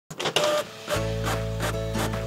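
A short mechanical whirring sound effect with clicks, in the manner of a printer carriage moving. About a second in, intro music with sustained bass and a steady beat of about three pulses a second takes over.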